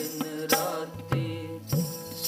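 Sikh keertan music: a harmonium holding steady chords under a wavering sung line, with sharp tabla strokes and the bass drum's pitch bending in low glides about a second in and near the end.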